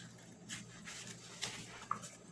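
Faint rustles and light knocks of the pages of a spiral-bound activity book being turned by hand, with a brief faint high squeak near the end.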